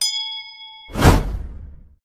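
A bright notification-bell ding sound effect that rings for about a second, followed by a loud whooshing swell with a low rumble that fades out about a second later.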